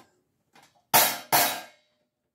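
A Sabian cymbal stack with large holes cut in it, struck twice with a stick, about a second in and again less than half a second later. Each hit is short and dies away within about half a second.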